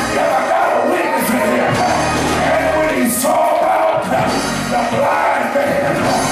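Live gospel music with singing by the choir, loud and continuous, with a bright splash in the highs about every two seconds.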